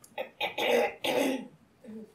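A man coughing about three times in quick succession, rough coughs that clear his throat, with a faint fourth near the end.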